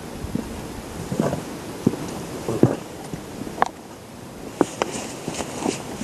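Footsteps going down stone steps, an uneven series of short scuffing knocks about one every half to one second.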